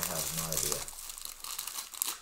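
Foil trading-card pack wrappers crinkling and rustling as they are handled and torn open, with a voice briefly in the first second.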